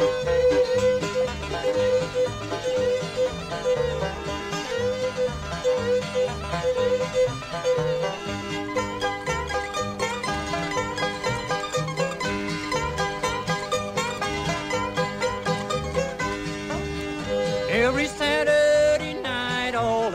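Bluegrass band playing an instrumental passage, with fiddle and banjo over a steady, even bass rhythm. There are quick rising sliding notes near the end.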